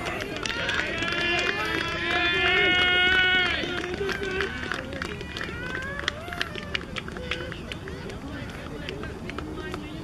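Several voices shouting and cheering at once, loudest about one to three and a half seconds in, then dying down to scattered calls. Sharp knocks are scattered through it.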